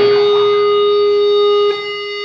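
Electric guitar amplifier feedback: one loud, steady tone held after the band stops playing. It cuts off suddenly about a second and a half in, leaving a quieter ringing from the amps.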